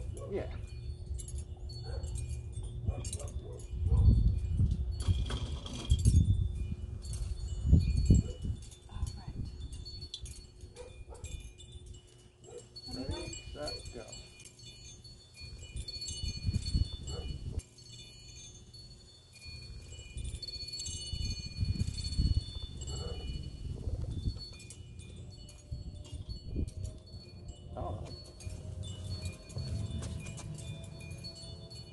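Metal wind chimes ringing on and off with several clear high tones, over low rumbling gusts of wind on the microphone that are loudest about four, six and eight seconds in.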